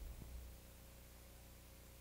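Near silence: a faint steady low hum, a little quieter after about half a second.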